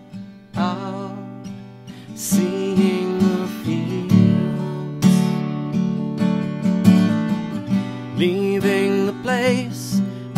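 Steel-string acoustic guitar strummed in a slow, dreamy rhythm, moving between Fmaj7 and C chords. A man's singing voice with vibrato comes in over it, held on long notes.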